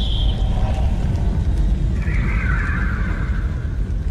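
Cinematic sound effects for the Sun's surface: a deep, steady rumble with a hissing sweep that falls away in the first half second, and a higher, hissing band rising over it from about two seconds in.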